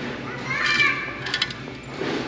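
Folded hand towels being handled on a store shelf, with a quick rustle about a second and a half in. A short high-pitched sound, like a voice or a squeak, comes in the background about half a second in.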